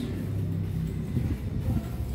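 A low, steady rumbling hum.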